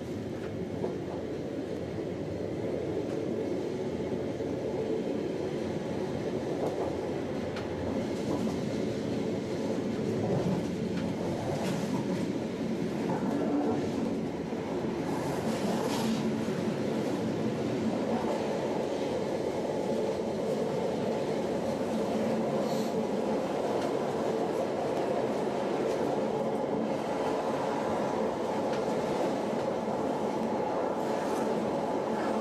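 Appenzeller Bahnen electric train running on its track: a steady rumble of wheels and running gear with a few clicks from the rails. It grows louder over the first ten seconds or so as the train pulls away from the station and picks up speed, then runs on evenly.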